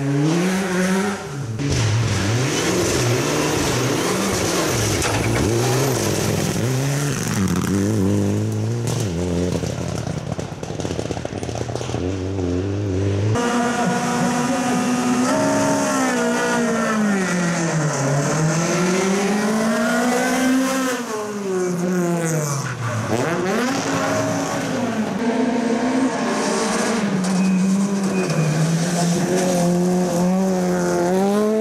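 Rally cars driven hard, engines revving with pitch climbing and dropping through gear changes and lifts. The sound switches abruptly to another car about 13 seconds in, and that car's engine falls in pitch twice and climbs back each time.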